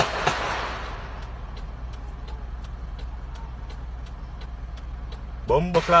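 Low steady hum of a running vehicle, with faint regular ticking about three times a second. A rush of noise fades out over the first second.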